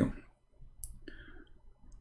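A faint click from a computer mouse a little under a second in, with a second soft click-like sound just after, against quiet room tone.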